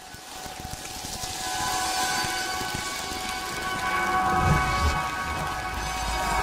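A rain-like rushing hiss fading in, with steady held musical notes over it from about two seconds in and a low rumble near the end.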